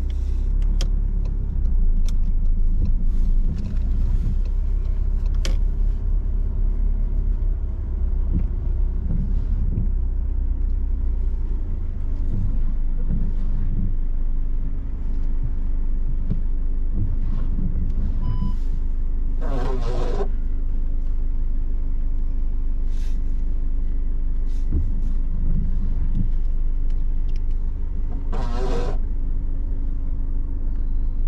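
Inside a car's cabin: steady low engine and road rumble of a car moving slowly through a parking manoeuvre. There are a few light clicks in the first several seconds, and a short beep just before two-thirds of the way in.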